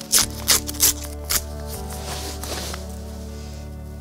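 Soft background music with steady sustained tones, over which a paper seed packet is handled and opened with a few short crisp paper rustles in the first second and a half.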